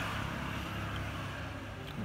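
Steady low rumble of road traffic, a motor vehicle's engine running nearby, easing off slightly toward the end.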